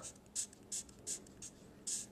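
Sharpie marker writing on paper: about five short, faint strokes of the felt tip.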